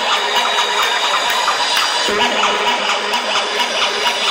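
Live electronic dance music playing loud over a concert PA, with a steady beat and a sustained low synth tone. It sounds dense and compressed, as a phone microphone picks it up inside the crowd.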